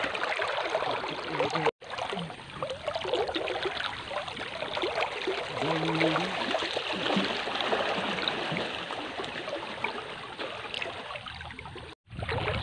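River water sloshing and trickling around people wading in it, a steady watery noise, with a brief voice-like call about halfway through.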